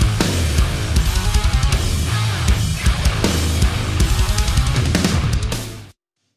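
Heavy metal band recording playing back, with distorted guitars and fast, dense drumming, run through an analog AudioScape 260VU VCA compressor that brings out the snare and high mids. The playback cuts off suddenly just before the end.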